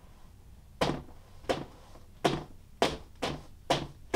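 Two floggers striking a padded table in alternation, about six sharp strikes in turn, the first a little under a second in and then every half second or so, coming slightly quicker toward the end.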